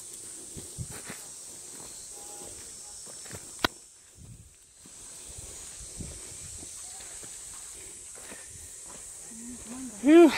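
Outdoor ambience with a steady high hiss, over footsteps and rustling as someone walks on dirt paths. A single sharp click comes a little over three and a half seconds in, and the sound dips briefly just after it.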